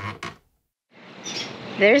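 A title jingle ends on a few quick clicks and cuts to about half a second of dead silence. Quiet outdoor background with faint chirps follows, and a woman starts speaking near the end.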